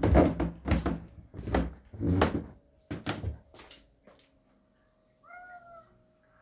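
Footsteps thudding down a carpeted staircase, about six steps in a steady rhythm that then stops. Near the end, a domestic cat gives one short meow.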